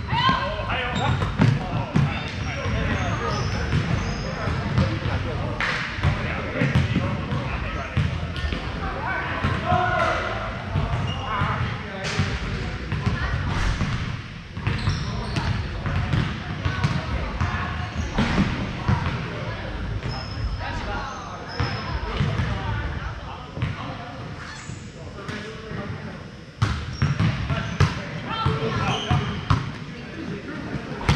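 Indoor volleyball play in a large, echoing gym hall: the ball is struck and hits the floor again and again in sharp smacks, among indistinct players' voices.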